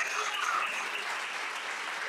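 Congregation applauding, the clapping slowly tapering off.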